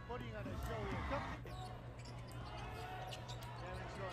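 Broadcast sound of a professional basketball game at low level: a basketball bouncing on the hardwood court, with faint commentary and arena noise underneath.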